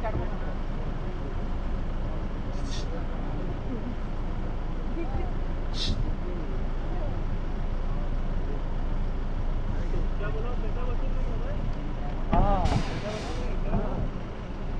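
A safari vehicle's engine running steadily, with the indistinct chatter of passengers over it. A louder voice calls out briefly near the end.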